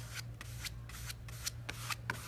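Short scraping strokes on a mesh stencil, several a second and uneven, as chalk paste is worked or wiped over it by hand.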